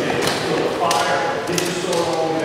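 Indistinct voices ringing in an echoing hard-walled court, with about three sharp taps or knocks scattered through it.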